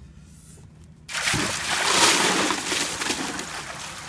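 Ice water splashing and sloshing as a man drops into a large plastic tub holding about 70 gallons of ice-cold water. The splash starts suddenly about a second in, is loudest a second later, then fades into sloshing and dripping.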